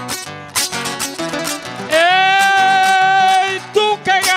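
Plucked-string accompaniment for improvised décima singing plays a steady rhythmic pattern. About two seconds in, a man's voice comes in on one long, loud held note that rises at its onset and breaks off shortly before the end.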